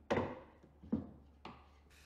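A few light clicks and knocks, about half a second to a second apart, from a metal push toggle clamp's handle being worked by hand and a cordless impact driver being set down on a pine board.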